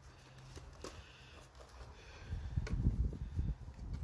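Irregular low rumbling and thumping on the microphone that starts about halfway through, after a faint, quiet first half.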